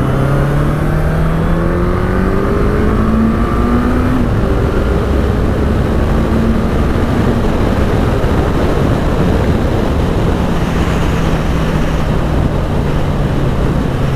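Honda CB1100RS's 1100 cc inline-four engine pulling up through the revs under acceleration; its pitch drops at a gear change about four seconds in, then it runs on at a steadier, lower pitch at speed. Heavy wind rush on the microphone runs under it.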